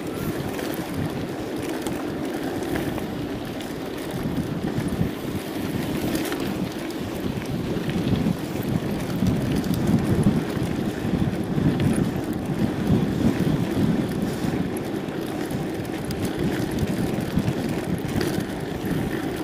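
Mountain bike rolling over a loose sandy dirt track: steady tyre noise with small rattles and ticks from the bike, mixed with wind on the microphone. It grows louder about halfway through.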